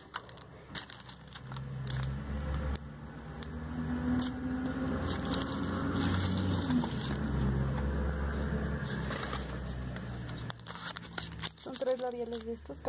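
Low engine rumble of a passing vehicle, building over a few seconds and fading away near the end, with light plastic crinkles and clicks.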